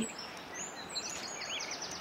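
Faint birds chirping a few times over a steady background hiss.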